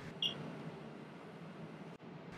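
One short, high electronic beep from a Pitco fryer controller's keypad as its P key is pressed, about a quarter second in, over faint room tone.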